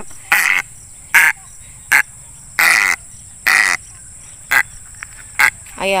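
A captured egret giving seven short, harsh calls while held in the hand, spaced roughly a second apart.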